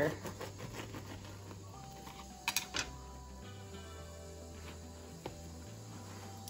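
Soft background music with slow, held notes. A few faint clicks come through it: two close together about halfway through and one near the end.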